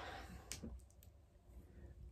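A few faint clicks and light knocks, the sharpest about half a second in: handling noise as things are moved about close to the microphone.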